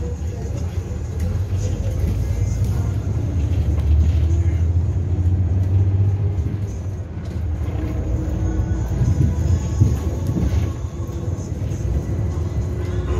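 Cabin noise of a natural-gas (CNG) city bus under way: a steady low engine and road rumble that swells about four to six seconds in, eases briefly around seven seconds, then builds again.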